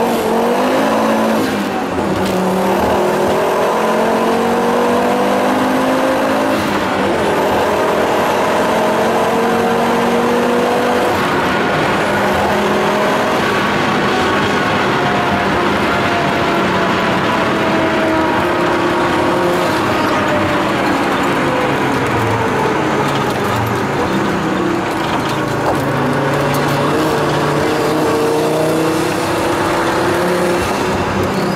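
Tuned Volvo 850 T5R's turbocharged inline five-cylinder engine heard from inside the cabin, pulling hard at speed over road and tyre noise. The engine note climbs in pitch through several long pulls, falls away in the middle and rises again near the end.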